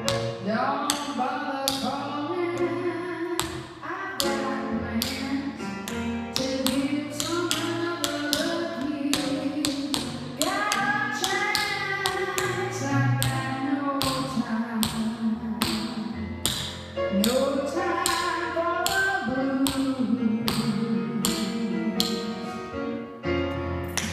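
Tap shoes striking a hardwood floor in a quick, irregular rhythm of sharp taps, danced from a seated position, over playing music with a gliding melodic line.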